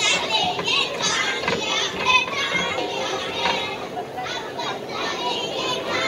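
Many children's voices at once, overlapping shouts and chatter.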